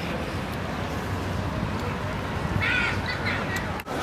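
Steady outdoor background noise of a busy park, with a short harsh cawing call from a crow about two and a half seconds in. The sound drops out briefly just before the end.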